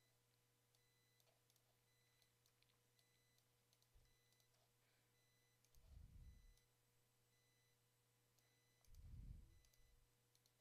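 Near silence: room tone with a steady low hum and scattered faint clicks. Two brief low thumps come about six and nine seconds in.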